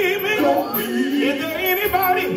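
Male gospel lead vocalist singing a wavering, ornamented melodic run into a microphone, with the live band under him, amplified through the PA.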